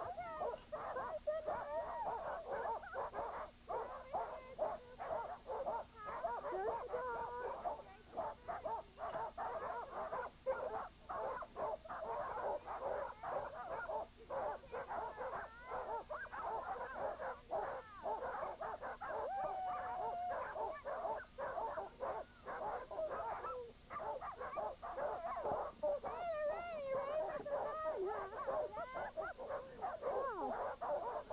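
A team of harnessed sled dogs barking, yelping and whining all together without a break, many voices overlapping into a continuous din, the typical clamour of a hitched team waiting to run.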